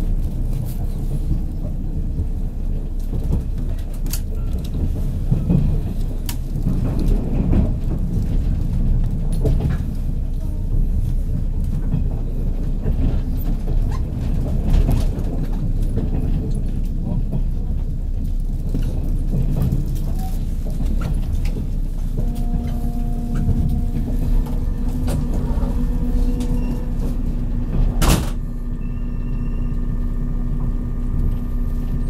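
Inside a JR 183 series electric train on the move: a steady low rumble of wheels on rail, broken by sharp rail-joint clicks. About two thirds of the way in, steady whining tones join as the train slows into a station, and a single sharp clank comes near the end.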